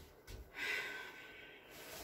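A person's breath through the nose, a snort-like sniff lasting about a second, after two soft low thumps near the start.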